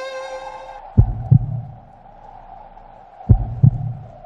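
A heartbeat sound effect in the soundtrack: two double low thumps, about a second in and again near the end, over a steady held hum, as the string music fades out in the first second.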